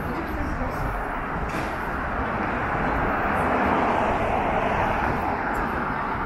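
City street ambience with a car passing close by, its noise swelling to a peak a little past the middle and then easing off, over a background of passers-by voices.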